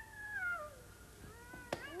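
A high, smooth sliding tone falls in pitch over the first part. Then rising glides come in around a single sharp click near the end, as the tossed coin drops and lands.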